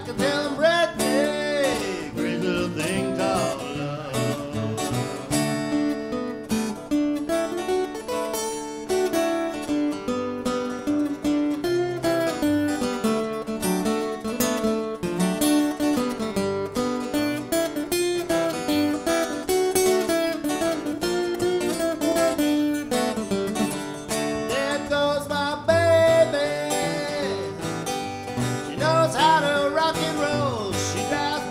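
Two acoustic guitars playing an instrumental break: strummed chords under a busy run of quick picked notes.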